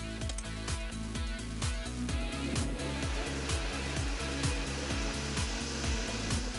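Background music with a steady beat, over the steady whir of a high-speed countertop blender (Shred Emulsifier) running, blending soup.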